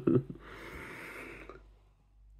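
A man's laugh trailing off into a steady breathy exhale lasting about a second, then near quiet.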